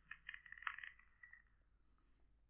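Small e-cigarette's coil crackling faintly during a draw, fading out about one and a half seconds in.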